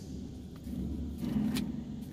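Handling noise inside a car: a low rumble with two brief sharp rustles as the paper instruction sheet is put aside and the plastic-wrapped massager is reached for.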